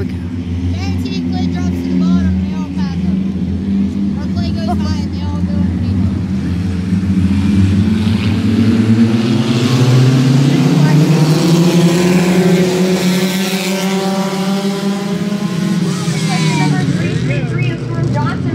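A pack of compact-class race cars accelerating together at the start of the race, engines revving and rising in pitch as the field comes past, loudest about ten seconds in, then easing off as it moves away.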